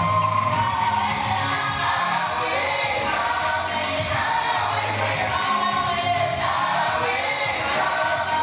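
Gospel choir singing, with a woman's lead voice carried on a handheld microphone over the group.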